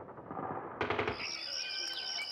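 Faint rapid gunfire sound effect under the landing footage, cut off about a second in by a new sound bed: crickets chirping in a steady high pulsing trill.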